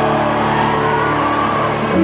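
Piano chords held and sustained, moving to a new chord near the end, over a faint crowd murmur.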